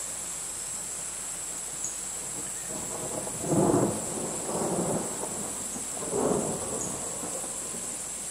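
Steady high-pitched chorus of crickets. In the second half, three short, louder swells of low rushing noise rise over it; the first is the loudest.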